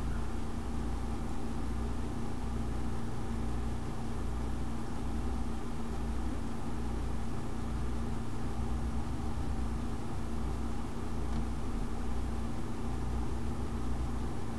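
Steady low background hum with a faint even hiss, unchanging throughout; no synth notes or clicks stand out.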